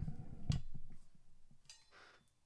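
Handling noise of a brass trumpet being raised to the lips: a sharp click about half a second in and a second click with a short metallic ring near the end, with quiet between.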